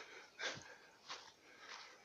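Faint breath sounds from a man: a short sniff about half a second in, then a couple of quieter breaths.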